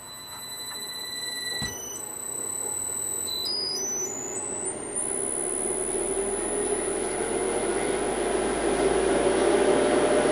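Raw Power oil centrifuge's electric motor spinning its rotor up toward 6,000 RPM on a variable-frequency drive, getting steadily louder. A high whine climbs in steps over the first five seconds, then holds, with a low hum and a rising running noise under it. A single click comes a little under two seconds in.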